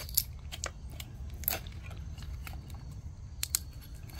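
Screwdriver prying and scraping at the hub of a metal axial cooling fan: irregular clicks and scrapes, with a longer scrape about a second and a half in and two sharp clicks near the end.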